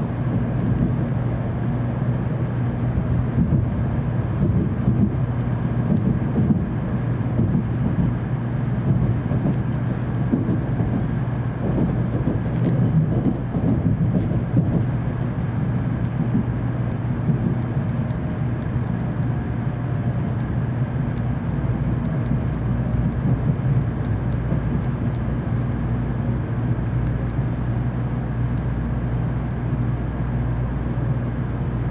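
Cabin noise inside a JR Central N700A Series Shinkansen car as it pulls into a station: a steady low rumble of wheels on rail and running gear, with a faint steady hum above it.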